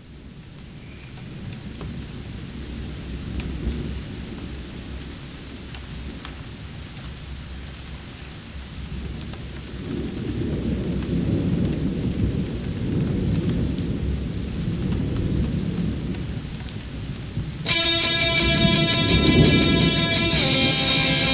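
Rumbling thunder and rain, a thunderstorm effect opening a hard-rock track, growing steadily louder. Near the end a sustained electric guitar chord rings in over it.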